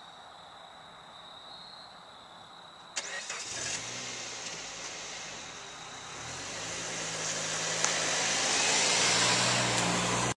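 A car engine starts with a sudden onset about three seconds in and runs at a steady idle. The car then pulls away, its engine pitch rising and getting louder toward the end.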